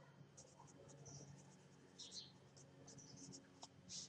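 Faint scratching of a pen on notebook paper as words are handwritten, in short strokes, a little clearer about two seconds in and near the end.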